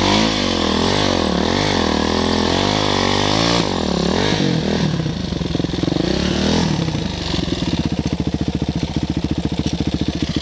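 Dirt bike engine revving up and down repeatedly as it is ridden. From about seven seconds in it settles to a lower, steady, evenly pulsing idle.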